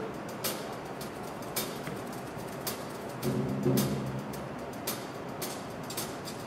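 Indoor percussion ensemble in a quiet passage: sharp clicks about once a second, with one held low chord sounding a little past the middle.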